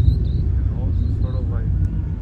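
Faint voices about a second in, over a steady low rumble.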